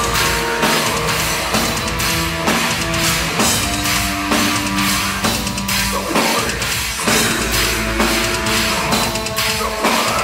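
Symphonic death metal played live by a full band, led by a drum kit with Meinl cymbals: fast, dense kick drums and cymbal crashes under sustained melodic notes.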